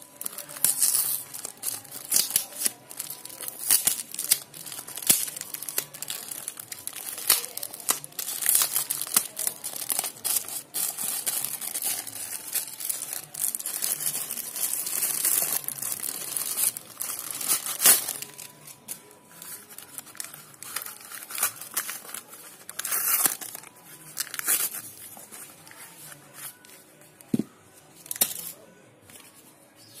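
A black plastic courier mailer being torn open and crumpled by hand: a dense run of crackling and ripping plastic that thins out and grows quieter over the last few seconds.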